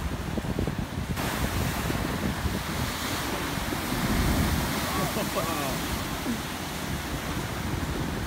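Ocean surf surging and crashing into a sea cave in a rocky cliff cove, a steady rushing roar of water and spray that swells about four seconds in. Wind buffets the microphone throughout.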